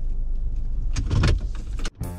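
Ford Transit Connect van running, heard from inside the cabin as a steady low hum, with a brief louder noise a little past a second in; the sound cuts off just before the end.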